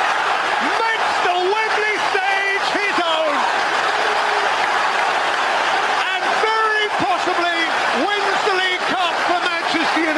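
Large stadium crowd cheering, with a man's voice shouting excitedly over it.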